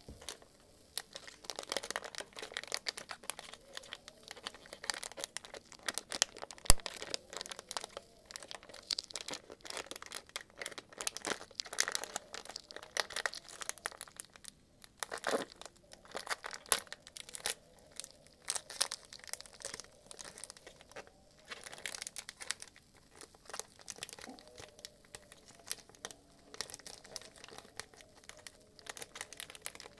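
Plastic ice cream wrapper crinkling and tearing as gloved hands open it: a dense run of irregular crackles starting about a second and a half in, with a few short pauses.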